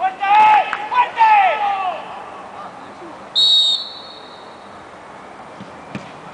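Players shouting, then one short, steady blast of a referee's whistle a little over three seconds in.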